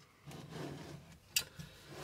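Handling noise from a black powder-coated steel pedal box being turned around on a tabletop, with one sharp click a little under one and a half seconds in.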